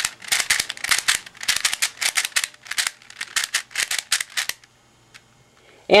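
Stock, unmodified V-Cube 6 (6x6x6 puzzle cube) being turned by hand: a rapid run of sharp plastic clicks, about five to six a second, from the layers snapping through the cube's clicky internal mechanism. The clicks stop about four and a half seconds in.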